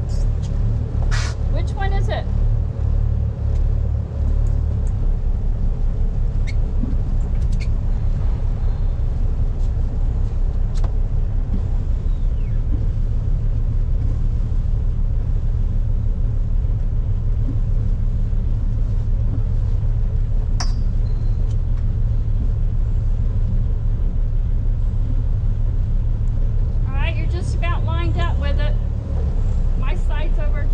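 The trawler's engine running steadily at low speed, a continuous low rumble with a fine even pulse, as the boat manoeuvres slowly into its slip.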